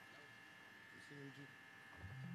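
Near silence with a faint, steady electrical buzz from the band's sound system, and faint voices about a second in.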